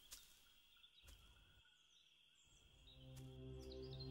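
Near silence: faint ambience with a few small high chirps and a thin steady high tone. About three seconds in, soft sustained low music tones swell in.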